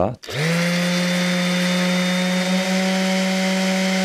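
DeWalt cordless random orbital sander switched on at its top speed setting, 7. It spins up quickly about a quarter second in and runs at a steady pitch, a hum with a whine above it. It is loud: about 99 dB at the sound level meter.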